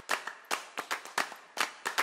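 Footsteps on a hard floor, a quick run of sharp clicks about four a second.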